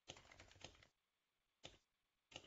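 Faint computer keyboard typing: a quick run of keystrokes in the first second, then a single keystroke near the end.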